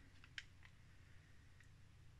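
Near silence: room tone, with a faint short click about half a second in.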